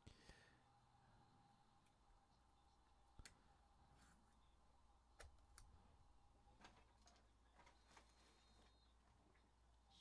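Near silence: faint scattered clicks from a stack of trading cards being handled and sorted by hand, over a faint steady room hum.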